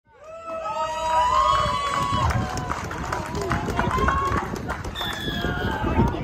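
Several voices shouting and calling out across a rugby pitch, drawn-out overlapping calls, with low rumbling underneath; the sound fades in over the first half second.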